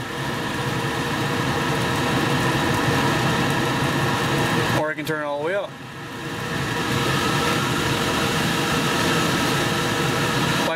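Centrifugal blower fan running on a variable speed controller with a steady hum. It grows louder over the first second or two as the knob is turned up, drops briefly about halfway, then rises again.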